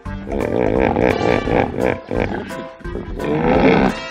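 Recorded hippopotamus call in two bouts, the first lasting about two seconds and the second starting about three seconds in, over background music.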